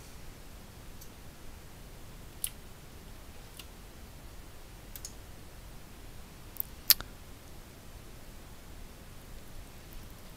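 A handful of sharp, isolated computer mouse clicks, about six spread over a few seconds, the loudest about seven seconds in, over quiet room tone.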